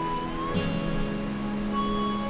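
Soft, slow background music of held chords with a high melody line; the chord changes about half a second in.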